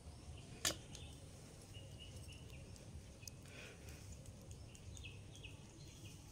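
Quiet outdoor ambience: a low steady background noise with a few faint, short high chirps scattered through the middle, and one sharp click about half a second in.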